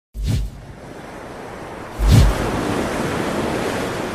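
Two short, deep booms, the first about a quarter second in and the second about two seconds in, over a steady rush of ocean surf.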